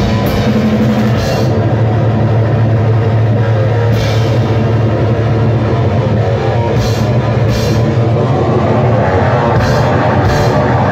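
Thrash metal band playing live at full volume: distorted electric guitar and bass over a fast drum kit, with several cymbal crashes cutting through.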